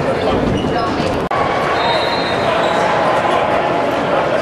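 Gymnasium noise: a volleyball bouncing on the hard floor among players' voices, with a sudden brief break about a second in.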